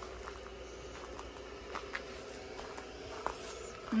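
Quiet background with a faint steady hum and a few soft, scattered clicks and rustles.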